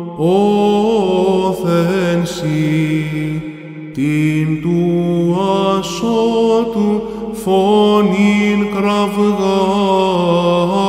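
Solo male cantor singing third-mode (Ἦχος γ') Byzantine chant, a slow melismatic line that holds each note and moves between them in steps. There is a short pause for breath about three and a half seconds in.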